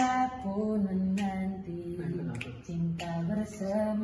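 A young man singing solo, a slow melody of long held notes that slide from one pitch to the next.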